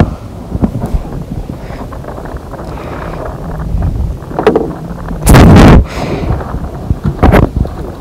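Wind buffeting the microphone in a steady low rumble, with a loud thump a little over five seconds in and a shorter one about two seconds later.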